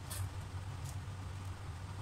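Cooking oil heating in a wok, with a couple of faint crackles over a steady low hum.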